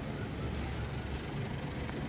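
Steady outdoor background noise with a low rumble underneath.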